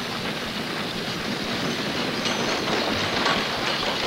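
Horse-drawn stagecoach approaching: a dense clatter of hoofbeats and rattling wooden wheels that grows slowly louder.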